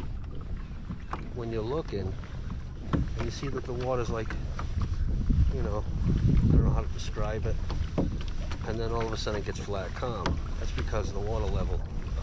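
A man talking in bursts over a steady low rumble of wind on the microphone, out on open water.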